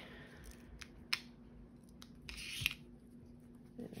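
Die-cut cardstock letters being worked loose from a thin metal cutting die by hand: a few light clicks and a short papery rustle about two and a half seconds in.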